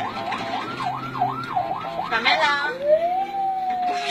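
Ambulance siren sounding a fast yelp, about three up-and-down sweeps a second, then switching about three seconds in to a wail that rises and then slowly falls.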